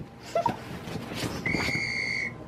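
A steady electronic beep from a phone's seven-second-challenge timer app, holding one high pitch from about one and a half seconds in: the signal that the seven seconds are up. Soft giggling comes before it.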